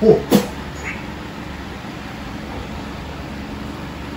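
A short cry that falls in pitch, with a sharp click, in the first half second, followed by a steady low background hum.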